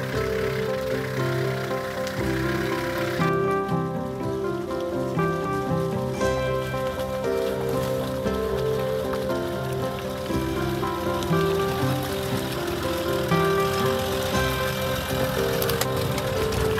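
Background instrumental music with held notes changing in steps, over a layer of noise that drops away abruptly about three seconds in.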